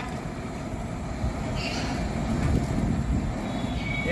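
A steady low rumble with no clear rhythm or pitch.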